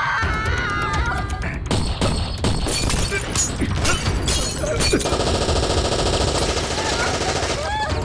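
Film soundtrack of automatic assault-rifle fire: a long run of rapid shots in quick succession, with a dramatic score underneath. A man's shout trails off at the start, and the shooting gives way to a dense sustained passage about five seconds in.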